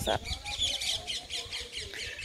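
Small birds chirping rapidly and repeatedly, a quick run of short high twitters.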